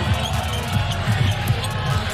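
A basketball being dribbled on a hardwood court, with repeated short bounces over the steady noise of an arena crowd.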